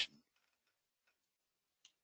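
Near silence in a pause of speech, with a faint click near the end.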